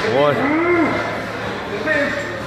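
A man's voice: a short word, then a drawn-out low vocal sound that rises and falls in pitch over about half a second.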